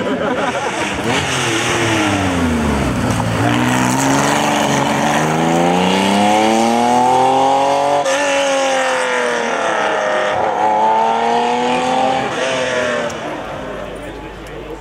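Air-cooled flat-six engine of a Porsche 911 RS 3.0 rally car driven hard. The revs fall as it slows for the corner, then climb as it accelerates away, with an upshift about eight seconds in and another near the end, and the sound fades as the car draws off.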